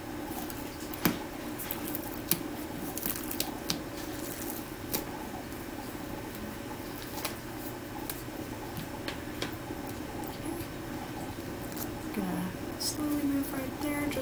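Transparent adhesive film dressing (Tegaderm) being peeled slowly off an IV site on a practice pad by gloved fingers: scattered small crackles and clicks over a steady low hum.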